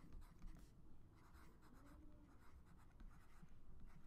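Faint scratching of a stylus writing on a tablet, close to silence.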